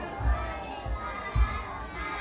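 Many children's voices chattering and calling out at once, with a couple of dull low thumps.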